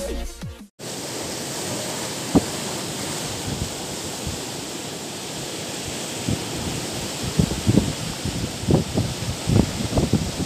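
Electronic intro music cuts off in the first second. Then comes the steady rush of choppy sea surf breaking on a shore, with wind gusting on the microphone in short low thumps that come more often near the end.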